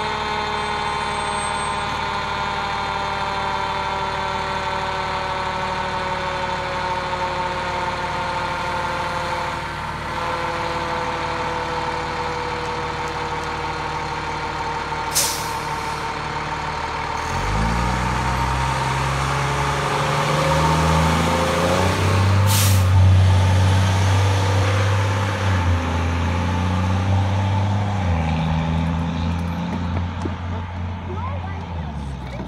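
A fire engine's diesel engine idles while a siren-like tone winds slowly down. A sharp air-brake hiss comes about halfway through, and then the engine revs up and pulls away, with a second air-brake hiss during the pull-away.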